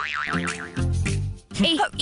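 Background score of a TV serial: a quick wobbling, warbling comic sound effect, then a few held low music notes, with a voice coming in near the end.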